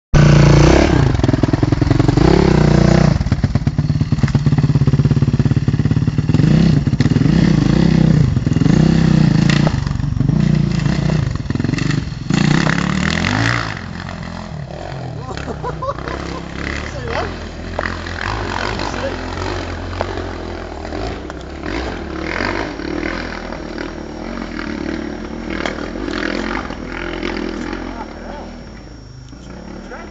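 Dirt bike engine revving hard close by, its pitch rising and falling over and over for the first dozen seconds or so. It then drops to a quieter, more distant run that goes on until near the end.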